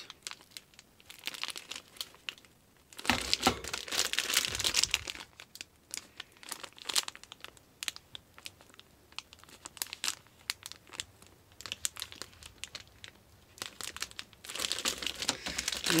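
Clear plastic bags crinkling and crackling as the petri dishes sealed inside them are handled, in irregular bursts. The loudest stretch comes about three to five seconds in.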